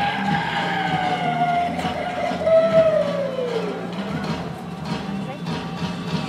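Amplified show soundtrack over loudspeakers, with one long pitched tone that slides slowly downward over about four seconds, over a steady low drone.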